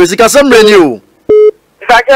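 A voice speaking, broken about a second in by a short, steady electronic beep; the speech picks up again near the end.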